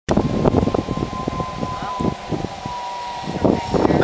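Zip line trolley running along the steel cable: a thin, steady whine that falls slightly in pitch as the rider slows, over wind and rustling noise on the microphone.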